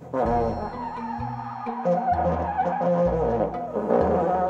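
Bass trombone played with the mouthpiece pressed against a cloth face mask over the player's lips: a string of low, blaring notes that change pitch every half second to a second. A laugh comes near the end.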